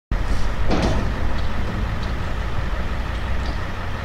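Steady low rumble of outdoor background noise, with a short clatter about three-quarters of a second in.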